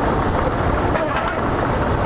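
Lottery ball-draw machines running, a steady loud mechanical noise as the balls are mixed.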